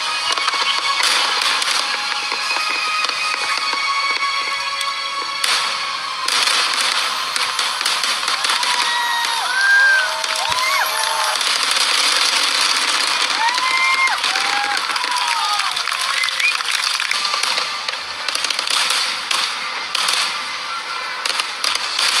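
Aerial fireworks bursting and crackling in a dense, continuous barrage, mixed with background music. A few short whistling tones rise and fall in the middle of the barrage.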